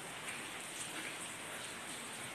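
Faint, steady hiss of background noise.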